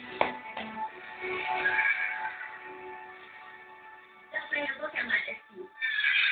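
Television programme playing: background music throughout, with voices from the show coming in during the second half. A single sharp tap sounds just after the start.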